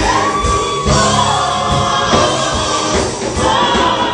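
Gospel praise team of women singing together into microphones over live accompaniment, one voice holding a long note through the first second and a half.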